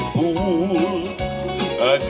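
A man singing through a stage microphone over instrumental backing, holding a note with a wide vibrato, then starting a new phrase near the end.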